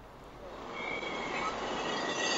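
Noisy din of a crowded street, a mob with motorbike traffic, rising from faint to loud, with a faint high whine about a second in.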